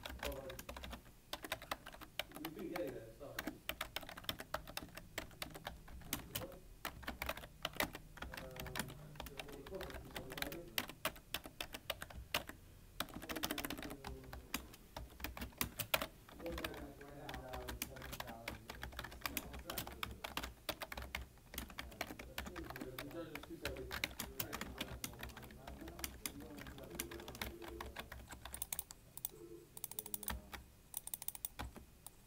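Continuous fast typing on a full-size computer keyboard: a dense run of key clicks with brief pauses between bursts. Talking can be heard in the background.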